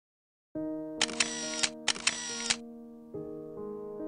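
Two quick bursts of a single-lens reflex camera's shutter firing in rapid continuous shots, the first about a second in and the second just before the halfway point. Soft music with sustained notes begins half a second in and runs under them.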